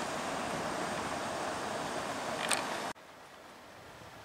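Steady outdoor background noise with a single sharp click about two and a half seconds in, then the sound drops suddenly to a much quieter hush where the recording cuts to another shot.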